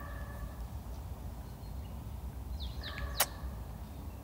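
Quiet outdoor ambience with a steady low rumble and a few bird calls: one short call at the start and a cluster of chirps just before three seconds. A single sharp click follows.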